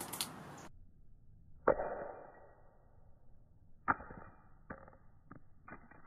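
Titanium-cased Apple Watch Ultra hitting concrete after a four-foot drop. Two sharp, muffled knocks come about two and four seconds in, followed by a few lighter taps as the watch bounces and settles.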